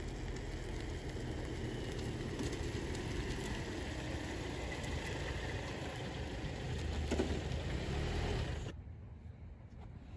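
Car engine running with a steady low rumble as a car pulls up along the street. The sound cuts off sharply near the end.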